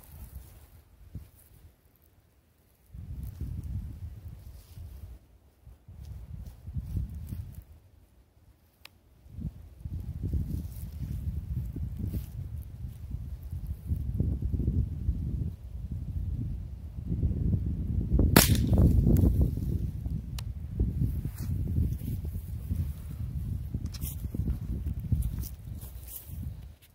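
.22 LR rifle fired once, a single sharp crack about two-thirds of the way through, over a low rumble that comes and goes.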